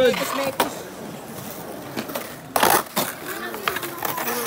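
A skateboard smacking on concrete, once loudly about two and a half seconds in, with a few lighter clacks around it.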